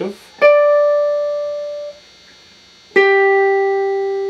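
Electric guitar (a Les Paul copy strung with 9–46 strings) sounding single picked notes against a tuner to check its intonation. A D is picked about half a second in and rings out, fading by about two seconds; a lower G is picked about three seconds in and rings on.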